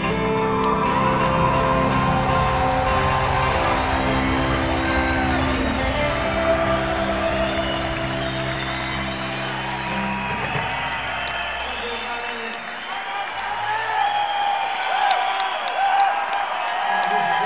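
Live band holding the closing chords of a slow song, which end about eleven seconds in; audience cheering and whooping rises over the last chords and carries on after them.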